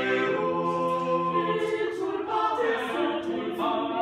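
Small mixed choir of men's and women's voices singing a cappella, holding sustained chords that change as the phrase moves on.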